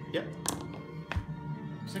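Dice rattled in a hand and thrown onto a cloth gaming mat: a few sharp clicks and a soft thud, over steady background music.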